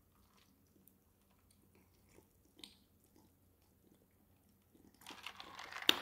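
A person chewing food close to the microphone: faint, scattered small wet mouth clicks, a little louder about two and a half seconds in and again near the end.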